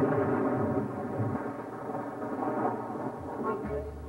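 Stage-musical pit orchestra music in a dense, busy passage without a clear tune, between sung lines of a show number. The deep bass returns near the end.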